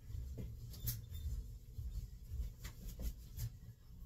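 Faint kitchen handling sounds as a can of crushed pineapple is fetched: a few soft clicks and knocks over a low background hum.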